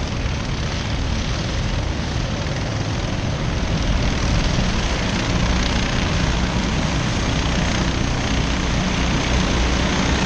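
Pack of racing kart engines buzzing together around the circuit. The combined drone grows a little louder about four seconds in as the karts come round towards the microphone.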